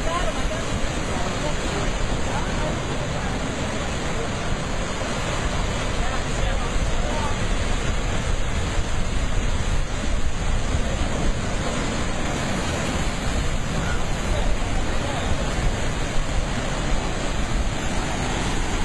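Ocean surf breaking into a rock-walled pool and white water pouring over the rock ledges, a steady loud rushing. Wind rumbles on the microphone throughout.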